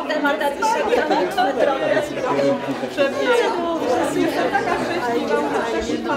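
Several people talking at once: overlapping chatter of a small gathering, with no single voice standing out.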